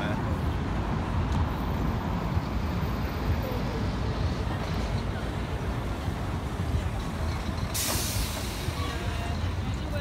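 Busy city street: a steady low traffic rumble with passers-by talking. About eight seconds in, a loud hiss lasts about a second.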